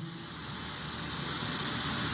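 Steady background hiss, mostly high-pitched, growing slightly louder.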